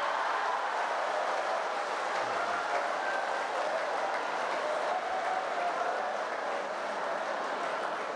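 Large audience applauding and laughing, a steady, dense clapping that eases slightly near the end.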